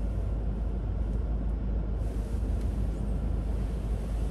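Steady low drone inside a car cabin, the car's engine running, with a faint hiss rising about halfway through.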